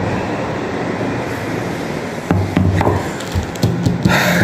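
Steady background noise, then from about two seconds in a few short knocks and rustles of objects being handled.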